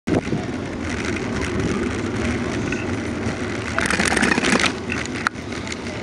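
Steady rolling noise of a bicycle coasting slowly down an asphalt path, with people's voices in the background. The noise grows louder for a moment a little past the middle, and there is one sharp click shortly before the end.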